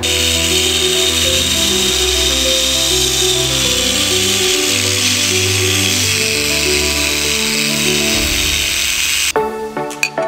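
Electric angle grinder grinding metal held in a bench vice, a loud steady hiss that cuts off suddenly near the end, under background music.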